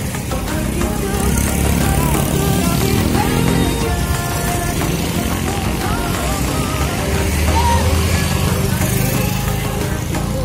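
Motorcycles and scooters ride past with their engines running, heard under music and scattered voices. The engine rumble swells twice, once early and again about eight seconds in.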